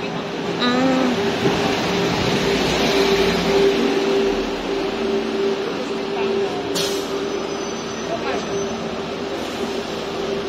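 Street traffic noise with a city bus's engine running close by, a steady hum with a deeper rumble building about four seconds in, and a brief sharp hiss about seven seconds in.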